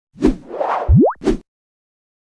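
Sound effects of an animated logo intro: a sharp hit, a swoosh, a quick tone sliding steeply upward, and a second hit, all within about a second and a half, then silence.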